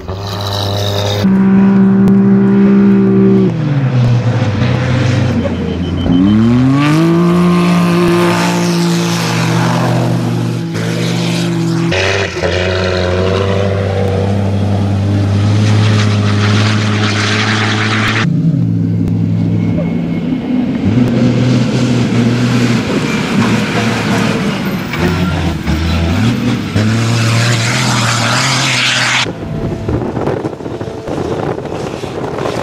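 Hino Dakar rally truck's diesel engine running hard as the truck drives past, its pitch dropping and climbing again with gear changes and throttle. Tyre and wind hiss run under the engine.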